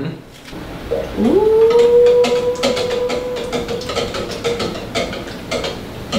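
Hand-held can opener cutting around the lid of a can of sweetened condensed milk, a run of short clicks as the cutting wheel is turned. Over the clicks, from about a second in, a long held note that rises at first and then stays level for about four seconds.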